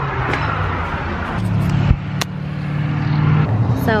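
Loud outdoor road traffic: a steady low engine drone that grows louder over the few seconds, with a thump and a sharp click about two seconds in.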